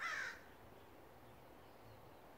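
A bird's single short call right at the start, falling slightly in pitch, over faint steady background noise.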